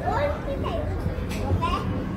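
Young children's high-pitched voices, calling out and chattering in short bursts, over a steady low background hum.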